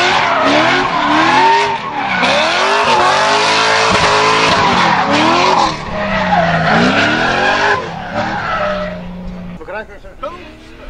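Lexus IS300 drift car's engine revving hard, its pitch sweeping up and down again and again, over the hiss and screech of its spinning rear tyres as it slides sideways. The sound eases off in the last couple of seconds.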